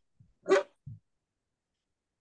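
A dog barks once, short and loud.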